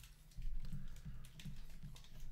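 A few light clicks of typing on a computer keyboard, over a low background hum.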